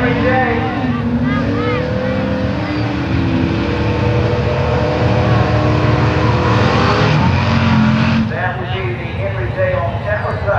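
Gasser drag car's engine revving hard at the starting line during a burnout, with the tyres spinning. The revs climb and hold for several seconds, then drop off about eight seconds in.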